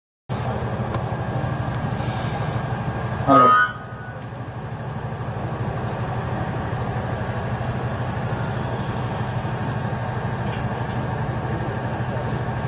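A steady low hum over background noise, broken about three seconds in by a brief, loud sound that falls in pitch.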